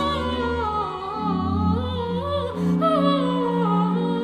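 A boy soprano singing a Baroque aria, accompanied by strings and a sustained low bass line.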